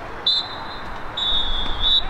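Referee's pea whistle blown twice: a short blast, then a longer blast with a slight trill.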